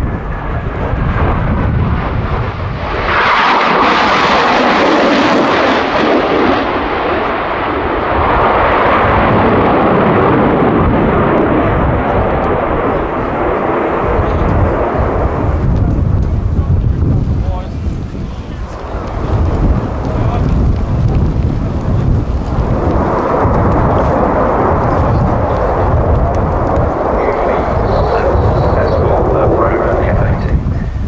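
Boeing F/A-18C Hornet fighter jet flying overhead, its twin F404 turbofan engines making a loud, continuous jet roar. The noise swells and fades in waves as the aircraft manoeuvres: it builds a few seconds in, eases off briefly about two-thirds of the way through, then swells again.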